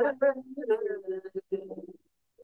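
Recorded singing of a Rajasthani village folk ballad: voices in phrases with long, fairly level held notes, stopping near the end.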